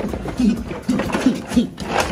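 A man's voice making short wordless vocal sounds, broken into quick bursts.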